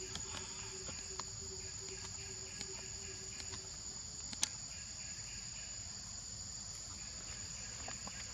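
Steady, high-pitched insect chorus, with a faint pulsing low hum that fades out a little before halfway and one sharp click about four and a half seconds in.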